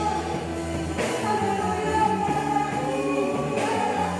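Live church worship band playing a song: electric and acoustic guitars through amplifiers, with voices singing along.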